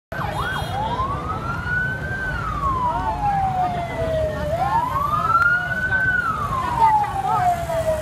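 Police escort car siren wailing slowly up and down, each rise and fall taking about four seconds, with fainter sirens overlapping it. A steady low rumble runs underneath.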